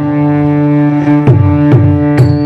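Stage accompaniment: a sustained chord held on an electronic keyboard, with hand-drum strokes joining about a second in and coming roughly twice a second.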